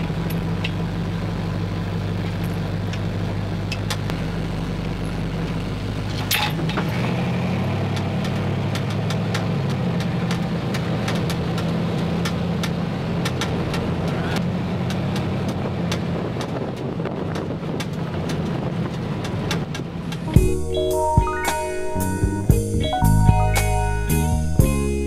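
A classic Chevrolet lowrider's engine running with a steady low note, which shifts about a third of the way in. Music with a beat comes in near the end.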